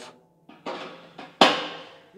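A knife blade scraping the metal burrs off freshly drilled holes in a steel grill bowl. A short rasp comes about half a second in, then a sharper, louder scrape and knock about a second and a half in that rings briefly in the metal.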